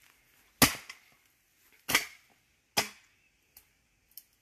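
Wood being chopped: three sharp strikes of a blade into a log, a little over a second apart, then a faint tap near the end.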